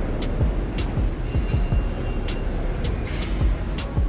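Background electronic music with a steady beat, sharp hits about twice a second over low thumps, layered with a dense rumbling noise.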